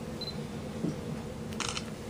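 A short high beep, then about a second and a half later a camera shutter click. This is typical of a camera confirming focus and taking a picture. A soft low thump comes just before the middle, over a steady low room hum.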